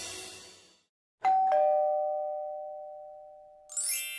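Two-tone doorbell chime, a high ding followed by a lower dong, ringing and slowly dying away. Near the end a quick rising shimmer of chimes.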